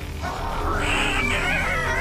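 Cartoon soundtrack: music with a wavering, gliding high-pitched sound effect that comes in about a third of a second in.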